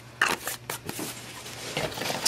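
Handling noise from plastic tubs and their lids being moved about over a cardboard box: a few short clicks and rustles in the first second, over a steady low hum.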